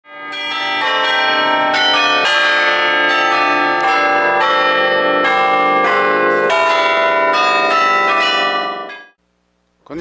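Tower bells ringing loudly and close by, many bells struck in quick succession so their ringing tones overlap. The sound stops abruptly about nine seconds in.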